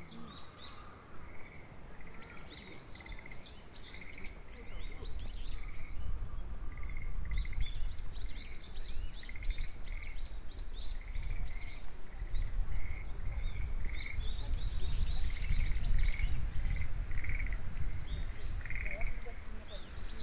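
Frogs croaking over and over in short pulsed calls, with a low rumble rising under them from about five seconds in.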